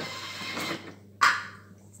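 Thermomix lid lock releasing with a short mechanical whir, then a brief scrape about a second in as the lid is twisted off the mixing bowl.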